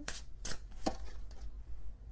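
Tarot cards being handled and laid down on a table: a few light, sharp taps and clicks.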